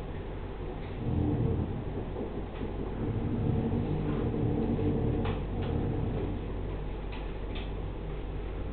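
A low rumbling room background, with a few faint short scratches of a felt-tip pen drawing on paper in the second half.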